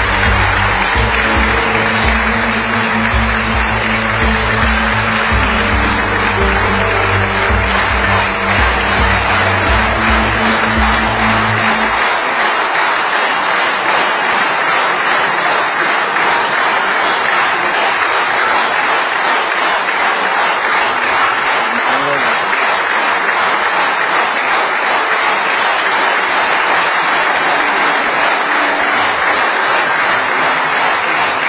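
A large audience applauding steadily, a standing ovation at the end of a speech. Low music plays under the applause for about the first twelve seconds, then cuts off abruptly, leaving only the clapping.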